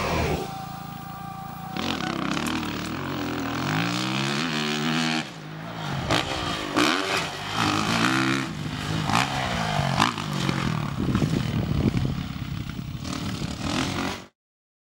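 Motocross dirt bike engine revving hard, its pitch climbing through the gears and falling off again several times, with a sharp drop about five seconds in before it climbs once more.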